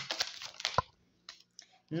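Tarot cards being shuffled and drawn by hand: a quick run of papery flicks and clicks in the first second, ending in one sharper snap.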